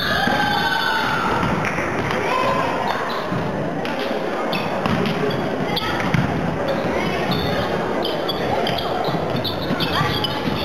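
Volleyball match in an echoing sports hall: voices of players and onlookers, with a few short thuds of the ball being hit or bounced, the loudest about six seconds in.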